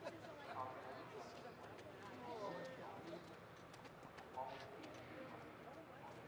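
Faint background chatter of a few people talking, with scattered light clicks and knocks.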